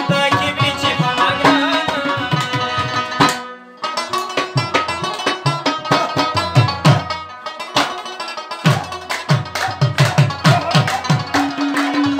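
Live Pashto folk music: harmoniums playing sustained reedy chords and melody over rhythmic hand-drum beats. The music breaks off briefly about three and a half seconds in, then resumes.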